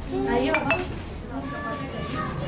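A couple of light clinks of tableware about half a second in, over several people talking.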